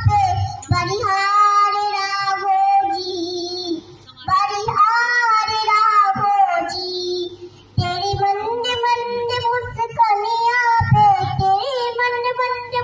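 A young girl singing a Hindi song solo into a microphone, holding long notes with a wavering pitch, with short breaks for breath about four and eight seconds in.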